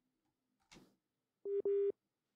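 Two short, closely spaced beeps of a steady mid-pitched telephone tone near the end. This is the tone of a phone call whose line has just dropped.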